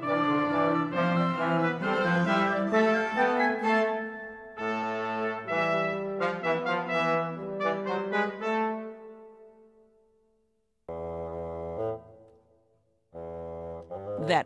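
Small chamber ensemble of wind, brass and string instruments, the octet just completed by the oboe, playing a lively passage with brass prominent; it breaks briefly, resumes, and fades out about ten seconds in. Then two short, low, held notes sound a second or so apart.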